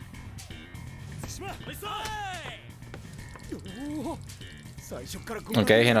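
Background music from the anime's soundtrack with short bursts of character voices, and a man's speech starting near the end.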